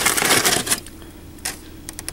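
Paper takeout bag and wrapping rustling and crinkling as hands open it, loud for the first moment, then a couple of small clicks near the end.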